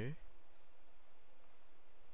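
A couple of faint computer mouse clicks over low steady room hiss, as a right-click opens a context menu.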